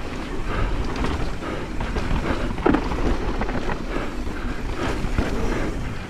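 Rush of wind over the microphone and mountain bike tyres rolling over a dusty dirt trail, with scattered rattles and knocks from the bike over bumps.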